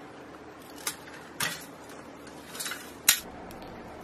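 Small loose steel pieces and a drilled sheet-steel plate being handled, giving a few separate light metallic clinks and clatters, the sharpest about three seconds in.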